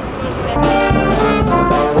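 Street brass band playing a lively tune, trombones and sousaphone over a bass drum beat, starting loud about half a second in.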